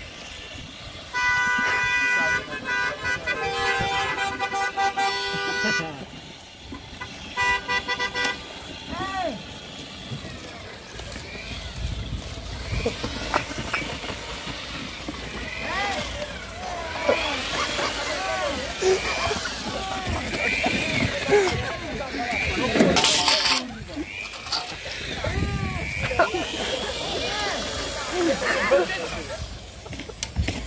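A car horn sounds a long steady honk of about five seconds, then a shorter honk a second later. Excited voices talk and shout after it, with one short sharp bang about two-thirds of the way through.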